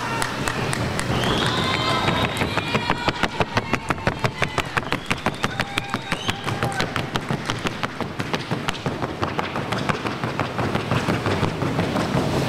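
Paso fino horse's hooves striking the wooden sound board in the four-beat trocha colombiana gait: a rapid, even clatter of hoofbeats that builds up a couple of seconds in and fades near the end.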